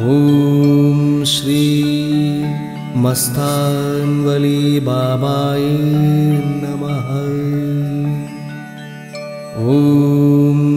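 Telugu devotional song: a singer holding long, gliding notes over a steady sustained accompaniment.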